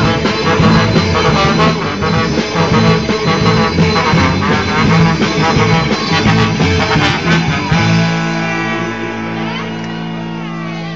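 Live band playing an instrumental break with brass and electric guitar over a driving beat, loud and rhythmic; about eight seconds in the beat stops and the band holds one long sustained chord.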